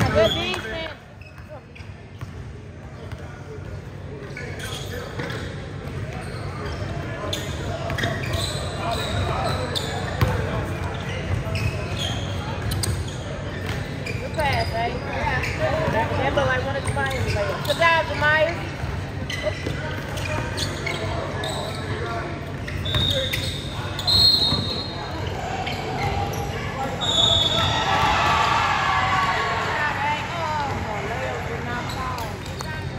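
Basketball being dribbled on a hardwood gym floor during live play, with players and spectators calling out, all echoing in a large gym.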